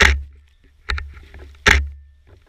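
A runner's rhythmic movement sounds through a body-worn camera: three sharp, strong strokes a little under a second apart, each fading quickly, over a low rumble.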